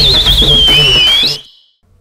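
A high, fast-warbling whistle that settles to a steady note and then bends up at the end, over a dance-music beat; both cut off about one and a half seconds in.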